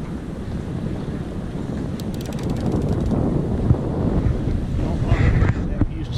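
Wind buffeting the microphone, a steady low rumble, with a short run of rapid faint clicks about two seconds in.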